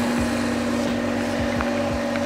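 Mazda RX-8's two-rotor 13B Renesis rotary engine idling steadily shortly after a cold start, with a few soft low thumps.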